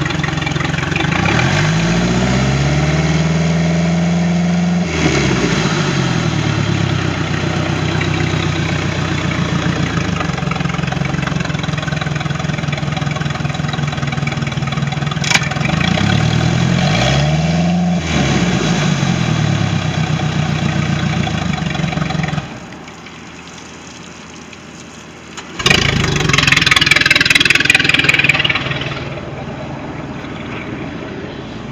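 MerCruiser 3.0 L four-cylinder sterndrive engine running on a flushing hose, now starting and running after a no-start fault. It is revved up and back down twice, then stops about three-quarters of the way through. A few seconds of loud rushing noise follow near the end.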